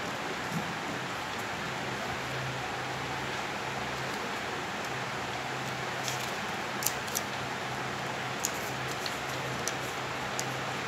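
Steady background hiss with a low hum that comes and goes, and a few light ticks and crackles of white paper being folded and creased by hand, mostly in the second half.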